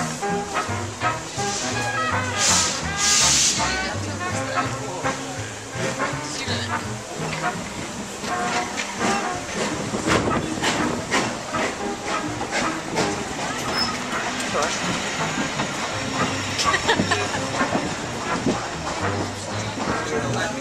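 Steam locomotive venting steam in two short hissing bursts about two and three seconds in, over continuous music and platform voices.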